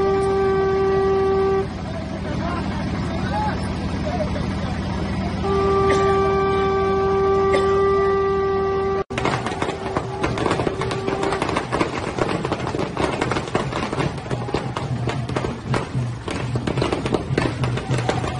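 A horn sounds two long, steady notes at one pitch over crowd noise. The first ends about a second and a half in; the second runs from about five to nine seconds. After a sudden cut there is a dense run of sharp percussive hits with crowd noise.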